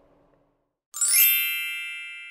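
A single bright chime struck about a second in, ringing with several high tones and fading away slowly: a sound effect accompanying a title card.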